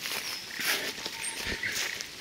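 Footsteps swishing through tall grass in irregular bursts, with a low thump about halfway through. A few faint high chirps sound in the background.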